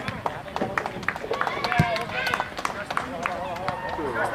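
Young players' voices shouting on a football pitch over outdoor ambience, with scattered light knocks and one sharp thump about two seconds in.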